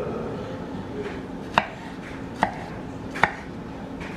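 Kitchen knife chopping red onion on a wooden cutting board: three sharp knocks of the blade hitting the board, a little under a second apart, over a low steady hum.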